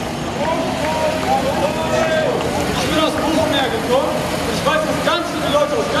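People talking in a marching crowd over the steady running of a slow-moving old fire truck's engine.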